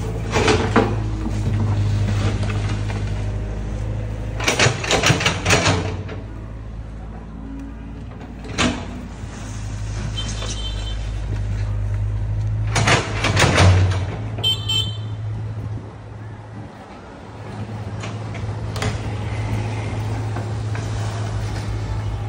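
Mini excavator's diesel engine running steadily, with scattered clanks and scrapes of its steel bucket working the dirt, the loudest a cluster about five seconds in and another about thirteen seconds in. The engine sound drops away briefly about three quarters of the way through.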